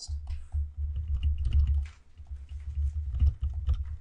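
A pen stylus tapping and scratching on a tablet screen while a word is written by hand: a quick, irregular run of small clicks. A steady low rumble runs underneath.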